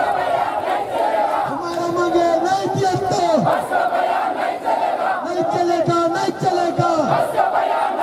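A crowd of women's voices chanting in unison: a short phrase with held notes that drop away at the end, repeated about every three and a half seconds over a steady crowd din.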